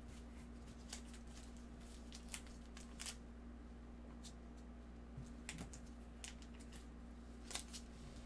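Trading cards being flipped through by gloved hands: faint, irregular clicks and slides of card edges, a few sharper ones scattered through, over a steady low hum.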